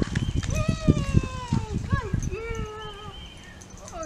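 A dog's paws running fast on a concrete driveway, a quick run of soft footfalls that stops about two and a half seconds in as she reaches her handler. Over it comes a woman's high, drawn-out praising voice.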